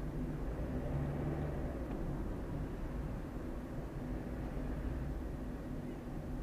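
Steady engine and road noise heard inside the cabin of a moving car: a low rumble with a faint engine hum.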